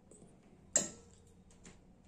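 A small knife cutting a tomato held in the hands: one sharp click about three-quarters of a second in, then a few faint ticks.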